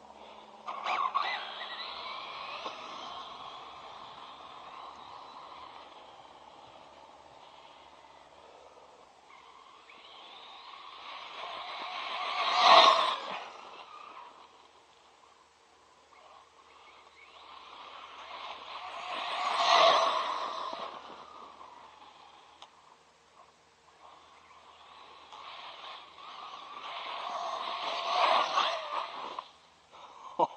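ZD Racing Pirates 2 MT8 RC monster truck's electric motor whining under throttle as it drives, swelling and fading three times: loudest about thirteen and twenty seconds in, with a longer run near the end.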